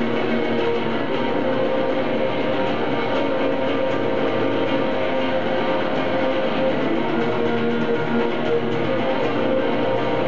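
Two electric guitars, one of them a baritone guitar, playing a continuous, dense instrumental passage live through their amplifiers, with no singing and no drums.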